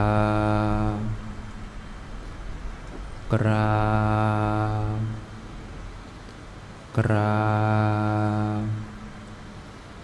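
A man's voice chanting a long, drawn-out Thai 'kraap' (bow down) three times, each on one steady low pitch held for about a second and a half, a few seconds apart: the cue for the congregation's three prostrations.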